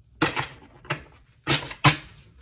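Tarot cards being handled on a table, giving four short, sharp slaps spread across the two seconds.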